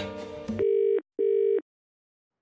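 Background music cuts out about half a second in, followed by a British telephone ringback tone: one double ring, two short identical buzzes with a brief gap, heard down the phone line while a call rings out.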